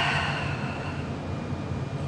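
A person's long breath out, a soft airy exhale that fades away about a second in, over a steady low room hum.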